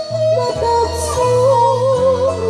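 Woman singing a Sundanese tembang Cianjuran melody in laras mandalungan, a wavering, heavily ornamented line that enters about half a second in, over plucked kacapi zither notes with violin accompaniment.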